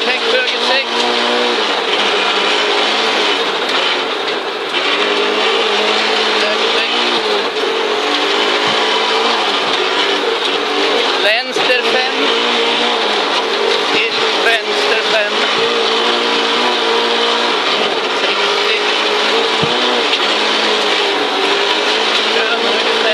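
Audi Quattro Group B's turbocharged five-cylinder engine running hard, heard from inside the cabin, its pitch rising and falling repeatedly with the revs and gear changes. A couple of sharp knocks come about halfway through.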